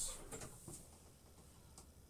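A few faint, light clicks and taps after a brief louder sound at the very start, like small objects being handled.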